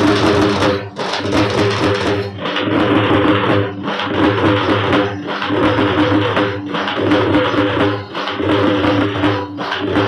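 Gondi folk dance music led by drums and percussion over a steady held melody, dipping briefly about every second and a half.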